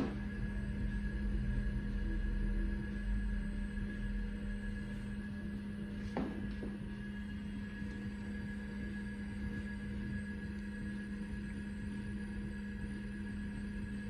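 Steady electrical hum of a running 1983 Apple Lisa computer setup, a low drone with a faint higher tone above it. A brief soft sound comes about six seconds in.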